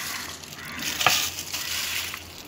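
Chicken pieces sizzling as they fry in hot oil in a pot, with a single sharp click about a second in.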